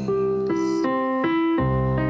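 A Korg digital keyboard played with a piano sound: held chords, with a new chord or bass note about every half second, and no voice.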